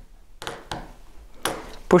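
Three short clicks of a small plastic clip being pressed by hand into the magnet slot of a 3D-printed hexagonal tile base. A man's voice starts near the end.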